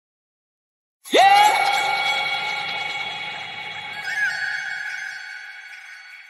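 Intro of an electronic trap track: after about a second of silence, a held electronic tone swoops sharply up in pitch at its start and then holds, slowly fading. A second, higher note comes in about four seconds in.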